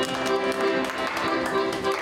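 Piano accordion playing held chords, with hand claps keeping time over it.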